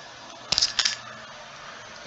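Two short, sharp clicks about a third of a second apart, over a steady low hiss and faint hum.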